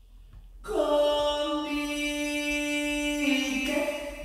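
Playback of a bolero lead vocal: a solo singing voice holds one long note, starting about half a second in and shifting near the end, heard through the reverb being added in the mix.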